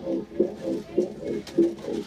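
Live rock band playing a repeated riff: short, evenly spaced pitched notes with sharp attacks, a little under twice a second.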